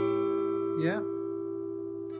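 Acoustic guitar A7 chord ringing out, its notes held steady and slowly dying away.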